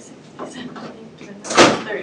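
A single sharp knock or bang about a second and a half in, over faint low voices.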